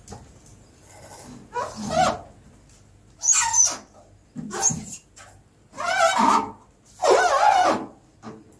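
A dog barking five times, with roughly a second between barks.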